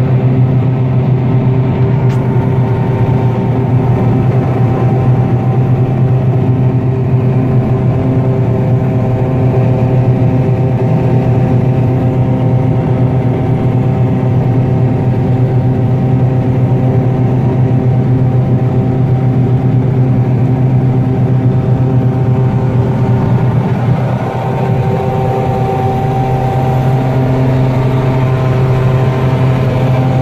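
Combine harvester running steadily while threshing alfalfa seed, heard from inside the cab: a constant machine drone with a strong low hum and several steady higher tones, dipping slightly in level about two thirds of the way through.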